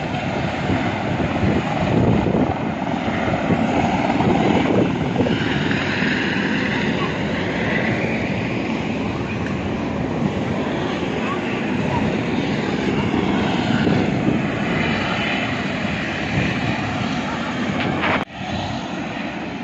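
A steady, loud engine drone with a fluctuating rumble underneath, continuing without a break.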